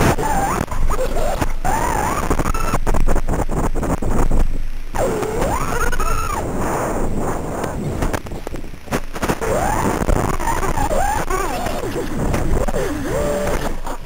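Racing quadcopter crash audio: a loud rushing noise with many hard knocks, and motor whines that bend up and down in pitch. It cuts off suddenly at the end.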